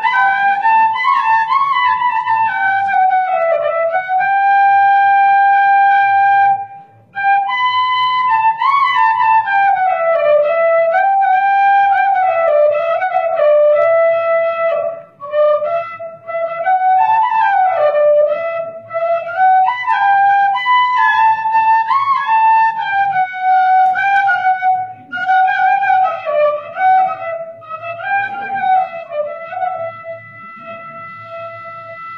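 Solo flute playing a slow, ornamented melody, one note line sliding and bending between notes, with a brief breath pause about seven seconds in.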